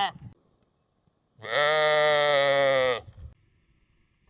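A sheep bleating: the end of one bleat right at the start, then one long bleat of about a second and a half, falling slightly in pitch.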